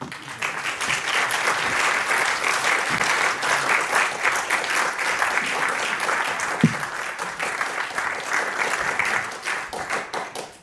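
Audience applauding, a steady mass of hand claps that dies away near the end.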